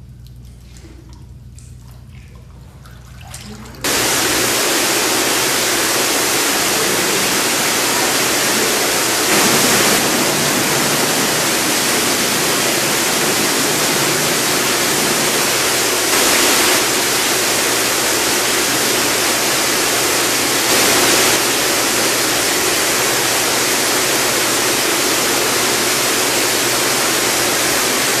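A quieter low hum for the first few seconds, then about four seconds in a loud, even hiss cuts in suddenly and holds steady, swelling slightly three times.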